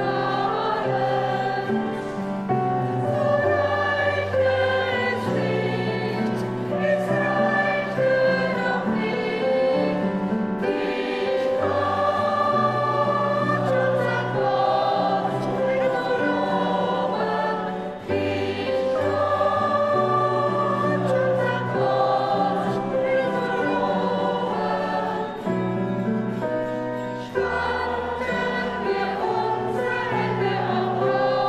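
A mixed church choir singing in parts, in long sustained phrases over a held bass line, with brief breaks between phrases.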